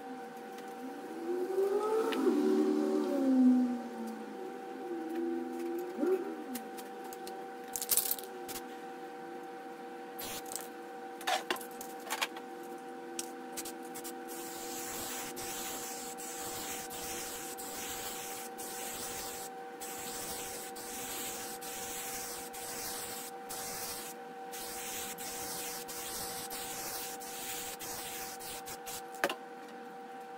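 Aerosol spray-paint can hissing in long sprays through the second half, broken by short pauses. Near the start, the loudest sound is a few seconds of wavering, gliding tones, over a steady faint hum.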